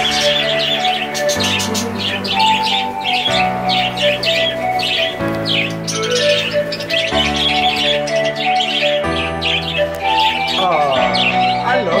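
A flock of budgerigars chirping and chattering continuously, heard over background music of sustained chords that change about every two seconds.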